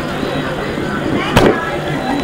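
Steady background noise with faint, indistinct voices, and one sharp knock about one and a half seconds in.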